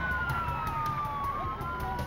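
Police car siren wailing in a slow, falling sweep, over a low steady rumble.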